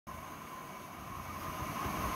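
Steady mechanical background hum with a constant high whine, slowly getting a little louder.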